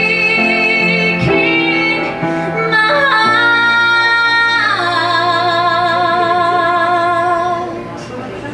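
A woman sings a slow ballad at the piano: a few short notes, then a long held note from about three seconds in. The note steps down in pitch a second and a half later and is held with vibrato until it fades near the end.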